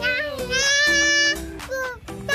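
A young child's high singing voice slides up and holds one long note for about a second, over background music whose beat drops away here.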